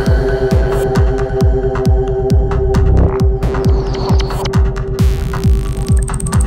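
Psytrance-style electronic dance music: a pulsing kick drum and bassline with ticking hi-hats under a long, steady held synth tone.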